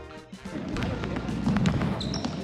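A snippet of upbeat music stops just after the start. Then comes the noise of a basketball game on a gym floor: voices from players and onlookers, with a ball bouncing on the hardwood.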